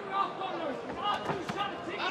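Shouting voices from the arena crowd and corners, with two sharp thuds about a second and a half in, half a second or less apart: strikes or footwork during the fighters' exchange in the cage.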